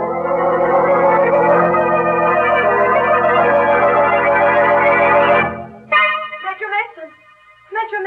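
Organ bridge music from an old-time radio drama: sustained chords that move through a few changes and cut off about five and a half seconds in, marking a scene change. Voices follow near the end.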